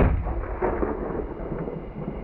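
Tail of a rifle shot from a Remington target rifle: the report cuts in right at the start and fades into a long, low rolling echo.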